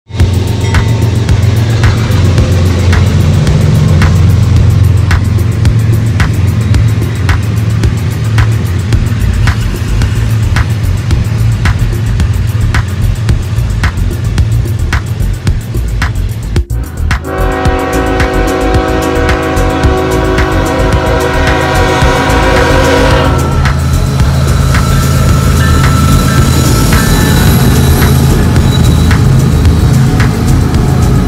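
CSX freight train passing close, its diesel locomotives giving a heavy low rumble with regular clicks. Just past halfway, after a cut, the locomotive's multi-note horn sounds one long blast of about six seconds.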